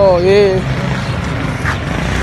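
A short spoken word, then a steady low rumble of outdoor street background noise.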